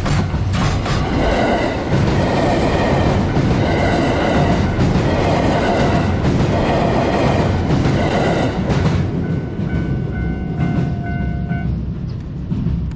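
A container freight train's wagons roll slowly past on steel rails while a 227 series electric train runs by on the nearer track, the two together making a dense, loud rolling rumble. A level-crossing bell rings with a steady repeating tone, heard more plainly in the last few seconds as the train noise falls away.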